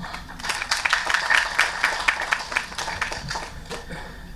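Audience applauding: a short spell of many hands clapping that thins out near the end.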